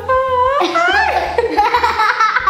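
A woman and a young girl laughing loudly together, starting about half a second in.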